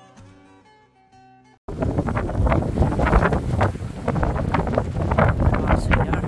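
Faint plucked-string music, then, about a second and a half in, a sudden cut to loud wind buffeting the phone's microphone, rough and gusting.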